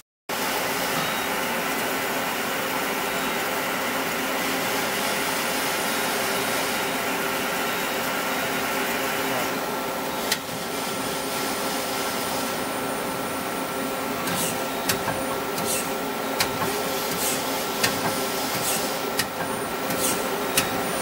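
Okuma Crown 762SBB CNC turning center running with a steady mechanical hum and a few steady tones. In the second half, short sharp bursts of hiss come every half second or so.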